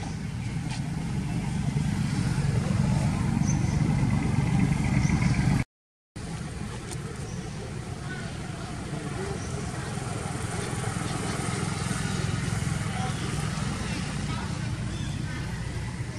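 A motorbike engine running close by, a steady low sound that grows louder over the first five seconds, cuts off abruptly, then goes on at a lower level. People's voices can be heard behind it.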